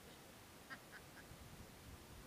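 A duck quacking faintly, three short quacks in quick succession about a second in, over faint background hiss.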